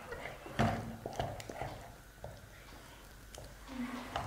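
A wooden spatula stirring and scraping a thick, nearly dough-stiff rice-flour batter around a nonstick pan. It makes soft, irregular knocks and scrapes that are busiest in the first two seconds and then thin out.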